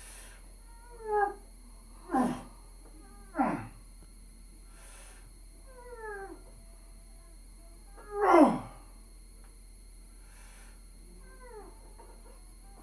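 A man groaning and grunting with effort while curling a heavy barbell: about six short strained groans and hard exhalations, each falling in pitch, a second or more apart, the loudest about two seconds in and about eight seconds in.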